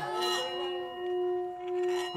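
Metal singing bowl ringing with one sustained low tone and a few higher overtones, its loudness slowly swelling and fading.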